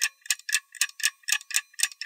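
Clock ticking sound effect: a steady run of short, crisp ticks, about four a second.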